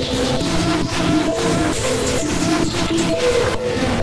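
Harsh electronic synth music: a sequence of short synth notes repeating over a dense, noisy industrial texture with a steady pulse.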